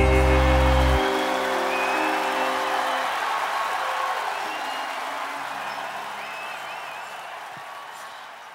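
A live band's last chord held and ringing out, its low bass note stopping about a second in and the rest about three seconds in, over a large crowd cheering and applauding. The whole sound fades steadily away.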